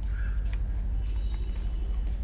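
Steady low rumble on the phone's microphone, with a few faint scattered clicks.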